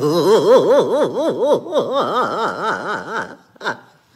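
A man laughing hard in a rapid run of 'ha' pulses, about five a second, for a little over three seconds before it breaks off.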